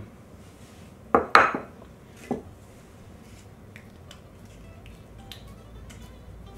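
A ceramic plate set down on a wooden countertop: two sharp clacks a quarter second apart about a second in, then a lighter knock a second later.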